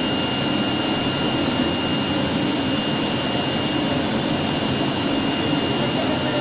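Automatic flatbed digital cutting table running while it cuts printed sheet material. It makes a loud, steady rush of air typical of its vacuum hold-down blower, with a thin, steady high whine over it.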